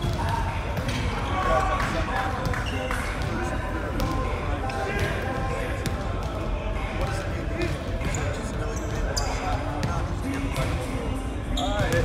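Basketballs bouncing on a hardwood gym floor, irregular sharp knocks, over steady background talking.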